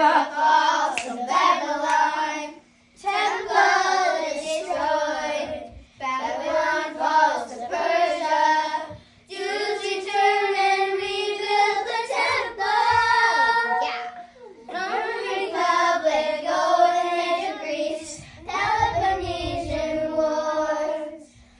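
A small group of young girls singing together in unison, in phrases of two to four seconds with short breaks between, over a faint steady hum.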